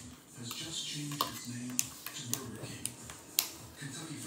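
A metal spoon clicking against a plastic bowl, about four sharp clicks spread out, the loudest near the end, with light rustling of a plastic snack pouch.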